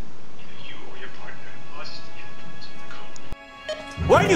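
TV soundtrack audio: background music with faint voices under it, which cuts off abruptly a little past three seconds in, leaving a brief quiet gap.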